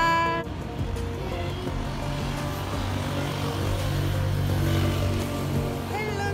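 A road vehicle's low engine rumble passing in the street, swelling and strongest about four to five seconds in, over background music.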